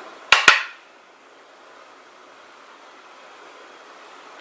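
Two sharp clicks in quick succession shortly after the start, then a low steady hiss of room noise.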